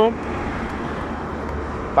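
Steady road traffic noise: a continuous rush of cars passing on the road.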